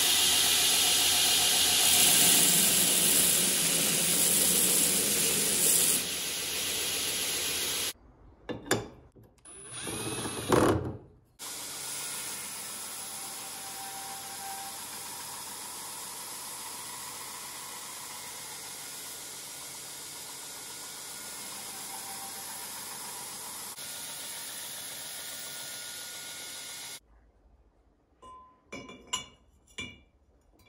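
Belt grinder running and grinding a steel dagger blade, in separate takes: loud and steady for the first several seconds, a short swell and fade around ten seconds in, then a long, quieter, even grinding run. Near the end, a few light clinks of metal against a glass jar.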